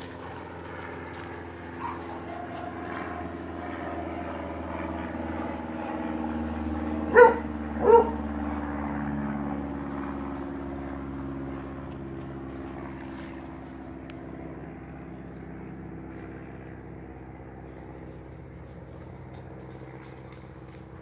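A dog barks twice about seven seconds in, two short barks under a second apart, over a steady motor hum in the background.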